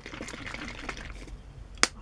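Faint handling noise, with a single sharp click near the end.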